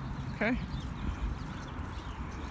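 Footsteps of a person walking on a concrete sidewalk while filming, over a steady low rumble on the phone's microphone.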